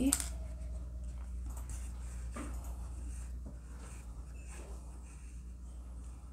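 Faint rustling and scratching of embroidery thread drawn through crocheted fabric by hand, over a steady low hum, with a brief vocal sound at the very start.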